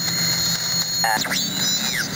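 A homebrew direct conversion shortwave receiver's speaker giving steady hiss and band noise with thin high steady tones, in a pause of a received single-sideband voice. About a second in, a brief 'uh' from the distant station comes through, and whistling tones glide up and down and cross each other.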